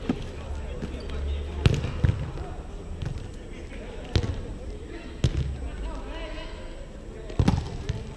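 A volleyball being struck by players' hands and forearms in a rally on a sand court: about five sharp slaps spread a second or more apart, the loudest near the end. Players' voices can be heard under them.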